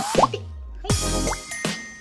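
Playful background music with cartoonish plopping sound effects, including a quick rising glide near the start.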